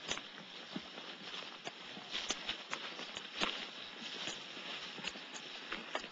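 Soft scattered clicks and knocks, a dozen or so at uneven intervals, over a steady background hiss.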